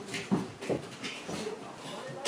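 A Basenji whining in short, eager bursts while it begs for its food: two brief, louder sounds early on, then fainter ones.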